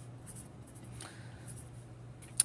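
Pencil scratching on lined paper in short strokes as digits are written, with a low steady hum underneath.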